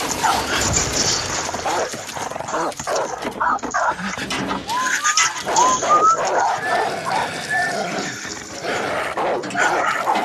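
A dog barking and whimpering, with a run of short rising whines in the middle.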